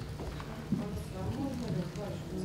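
Faint, distant talk from people off the microphone in a large hall, with one sharp click about a third of the way in.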